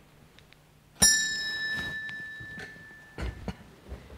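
A small sacristy bell struck once about a second in, its ring fading over about two seconds, signalling the priest's entrance for Mass. Two short dull knocks follow near the end.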